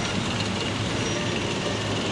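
Leclerc main battle tanks driving past, their engines running with a steady low hum and a thin high whine over an even noise.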